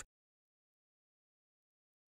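Silence: a gap in the recording with no sound at all.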